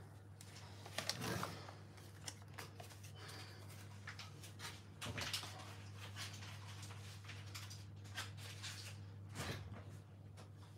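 Quiet kitchen handling noises: a few faint knocks and rustles, the clearest about a second in and again near the end, over a steady low hum.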